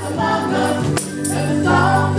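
Gospel praise team of women's voices singing in harmony into microphones, over a backing band with steady low notes and a beat struck about once a second.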